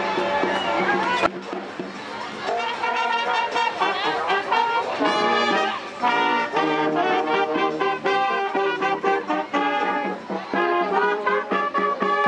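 A marching brass band playing: trombones, trumpets and a sousaphone over a steady drum beat. The sound cuts in sharply about a second in.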